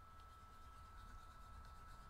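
Near silence: room tone with a faint low hum and a thin, steady high tone.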